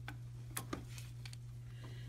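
A few faint, scattered metallic clicks from a ratchet wrench being worked on a camshaft phaser bolt of a Ford 3.5L EcoBoost V6 and lifted off as the bolt is loosened.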